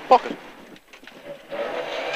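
Ford Pinto 8-valve engine of a Mk2 Escort rally car, heard from inside the cabin. It is nearly silent off the throttle for about a second, then comes back with a steady note about one and a half seconds in.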